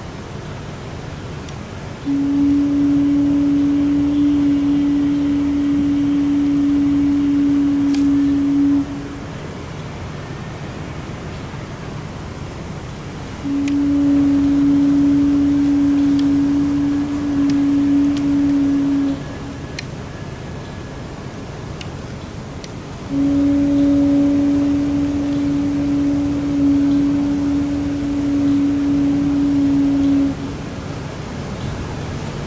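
Three long, steady blasts on one low horn-like note, each lasting about six to seven seconds, with pauses of about five seconds between them, over steady outdoor street noise.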